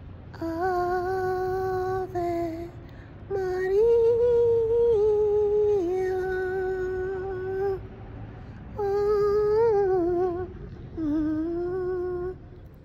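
A woman humming a slow melody in long held notes, in four phrases with short breaks between them.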